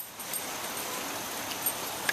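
Steady hiss of light rain falling, with one faint tick near the end.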